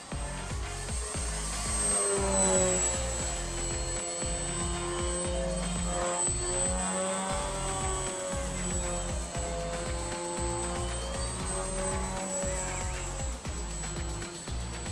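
Background music over the whine of the Fun Cub RC model plane's electric motor and propeller. The whine rises and falls in pitch as the plane manoeuvres and passes.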